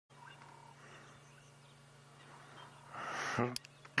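Quiet outdoor background with a faint steady low hum. Near the end comes a short, louder voice sound and a couple of clicks.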